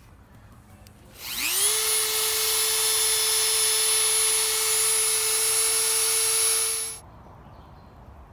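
Dremel rotary tool spinning up about a second in with a quick rising whine, running at a steady high pitch, then switched off abruptly about a second before the end.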